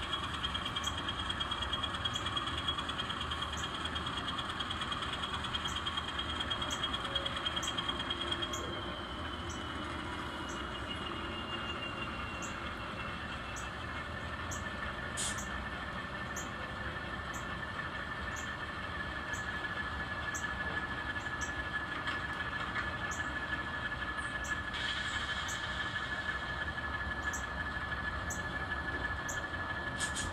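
N scale diesel switcher locomotive creeping along its train, with a steady high-pitched whine from its motor and gearing. The pitch slides down about nine seconds in and settles lower from about thirteen seconds. Faint regular ticks come a little more than once a second.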